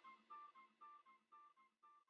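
Very faint background music: plucked acoustic guitar notes in an even, gentle run.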